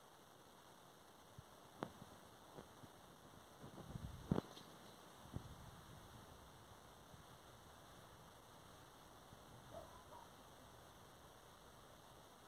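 Near silence: a faint hiss with a few scattered soft clicks and knocks, the loudest about four seconds in.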